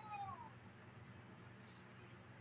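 A short meow-like cry that rises and then falls, ending about half a second in, followed by faint steady room hum.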